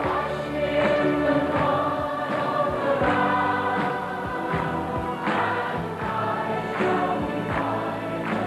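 Church choir singing a gospel hymn with instrumental accompaniment and a steady beat.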